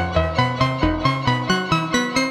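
Novation Bass Station II analog synth playing a sequenced run of short, plucky notes, about four a second, the pitch stepping up and down. Oscillator Error adds a random detune to each note.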